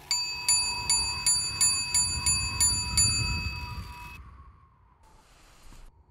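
A clock bell striking nine, a ringing stroke about three times a second, marking nine o'clock. The ringing fades for about a second after the last stroke, then cuts off suddenly.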